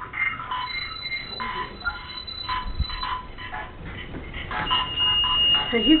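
EchoVox spirit-box app playing rapid, choppy fragments of voice sounds with echo. A thin steady high tone sounds through the first half, and another comes in near the end.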